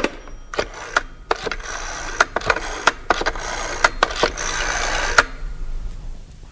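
Telephone sound effect: a rapid run of mechanical clicks with a rattling whir, like a rotary phone dial being turned and running back, which stops abruptly about five seconds in.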